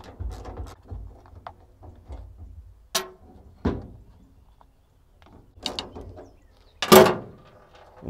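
Hand ratchet clicking as a 5/16 socket backs out the mounting bolts of a 1967–72 Chevy truck wiper motor, with scattered knocks as the loosened motor is handled and one loud clunk about seven seconds in.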